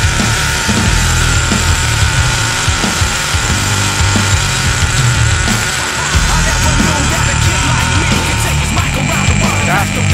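Loud rock music with a heavy beat, over a steady high-pitched whine that fades out near the end.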